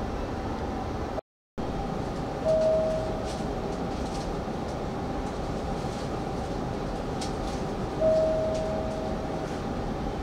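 Steady hum and hiss inside a stationary Hanshin 5500-series electric train car at a platform. The sound cuts out for a moment about a second in. A short clear tone sounds twice, about five and a half seconds apart, each starting sharply and fading over about a second.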